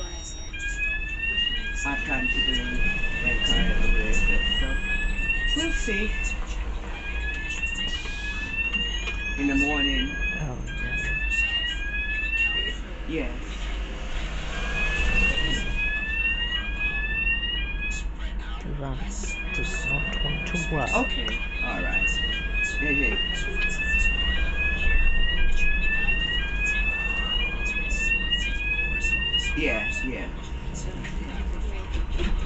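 Electronic warning beeper aboard a bus sounding short rising chirps, about two a second, with a couple of brief pauses.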